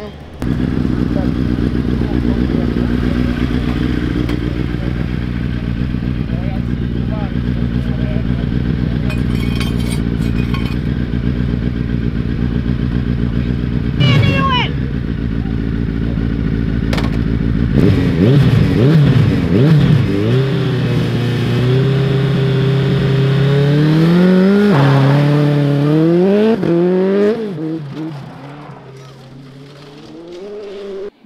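Racing sidecar motorcycle engine idling at the start line, revved a few times, then launching and accelerating hard away through about three upshifts. It fades out near the end.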